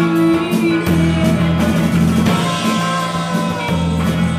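Live rock band playing a song: electric guitars and bass holding sustained notes over a drum kit, with regular drum and cymbal hits.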